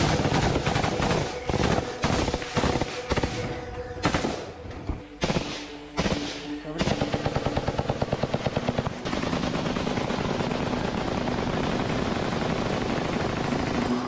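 Close automatic rifle fire. It starts as scattered shots and short bursts, becomes a fast, even burst about seven seconds in, and then turns into dense, continuous firing.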